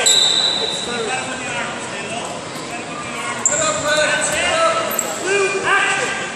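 Voices calling out in a large echoing hall, with thuds from two freestyle wrestlers grappling on the mat.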